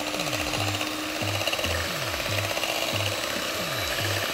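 Hand-held electric mixer running with its beaters turning in a metal bowl of batter, over background music with a low note repeating about every half second.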